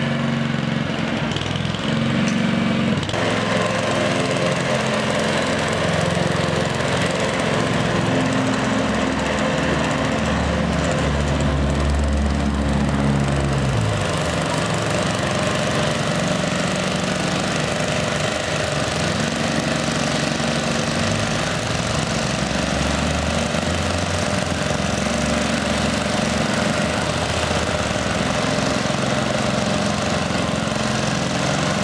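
Walk-behind rotary lawn mower's small petrol engine running steadily while cutting grass, its pitch shifting a little a few times as it works.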